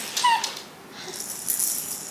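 Plastic baby rattle shaken, a light, high rattling of the beads inside, strongest in the second half.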